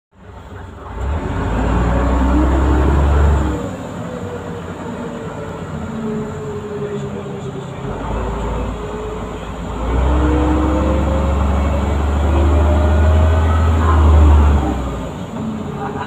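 Leyland Olympian double-decker bus's diesel engine and driveline heard from the upper deck. A deep rumble swells about a second in and again about ten seconds in, each time with a rising whine as the bus pulls, and settles to a quieter running sound in between.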